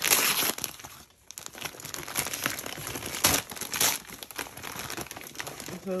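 Paper wrapping crinkling and rustling as a small gift package is unwrapped by hand, loudest in a burst at the start and in two sharp crackles about three and four seconds in.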